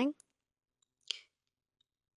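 Near silence with one short, sharp click about a second in.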